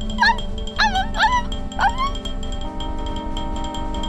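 Cartoon puppy yipping: about four short, high, pitch-bending yips in the first two seconds, over orchestral background music that carries on alone afterwards.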